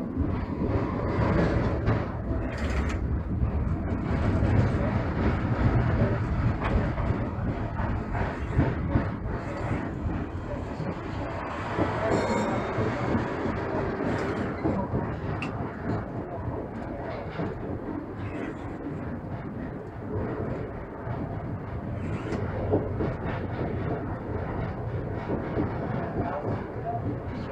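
Konstal 803N tram running along street track, heard from the driver's cab: a steady rumble of wheels on rail with scattered clicks and rattles, loudest over the first several seconds.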